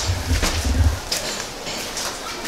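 Footsteps on concrete steps during a climb, a few sharp scuffs and knocks, over a low rumble from the moving handheld microphone that fades after about a second.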